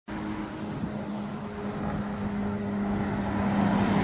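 Engine noise from a motor vehicle outdoors, a steady low hum over a rushing background that slowly grows louder.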